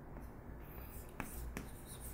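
Chalk writing on a blackboard: faint scratching strokes from about halfway in, with a couple of sharp taps as letters are formed.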